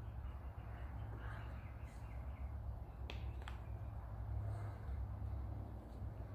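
Quiet hand handling of a rubber dust boot being worked onto a cast brake wheel cylinder, with two faint clicks a little after three seconds in, over a steady low hum.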